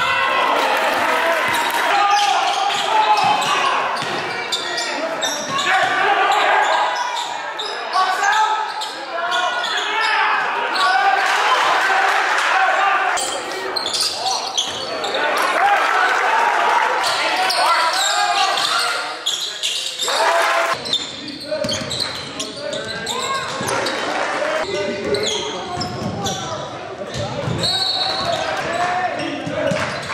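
Live basketball game sound in a gym: a ball bouncing on a hardwood court, with shouting from players and spectators. Everything echoes through the hall.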